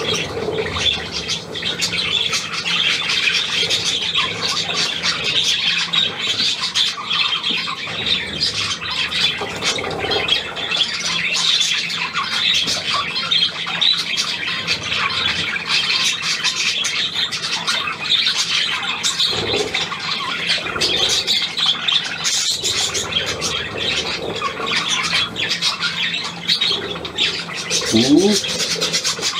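A flock of budgerigars chattering without a break: a dense, steady mix of rapid squawks and chirps.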